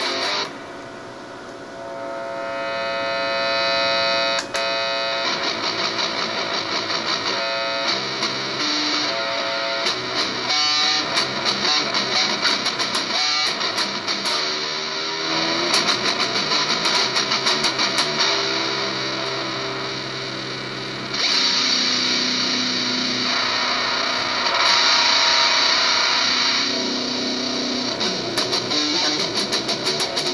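Electric guitar (Eastwood Sidejack) through a BOSS MT-2 Metal Zone distortion pedal into a Vox AC15 amp, playing distorted chords. Long chords are left ringing at first, then the playing turns to busier picked and strummed passages with sharp attacks and a louder held stretch in the second half.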